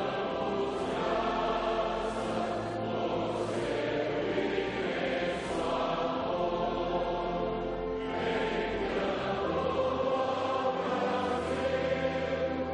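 A large congregation singing a hymn together, slow, with long held notes and chords changing every few seconds.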